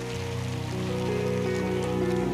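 Congregation clapping, an even patter, over soft background music holding sustained chords.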